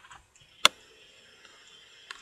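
A single sharp computer mouse click about two-thirds of a second in, over a faint steady background hiss.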